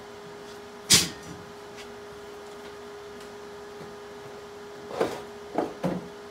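Objects being handled on a workbench: one sharp knock about a second in, and three smaller knocks near the end. A steady hum runs underneath.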